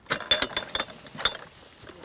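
Empty glass jars with metal lids clinking and knocking against each other in a cardboard box as it is handled, several sharp clinks, the loudest about a third of a second in.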